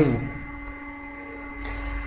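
A pause in a man's speech: his voice trails off at the very start, then a faint steady hum and quiet room noise.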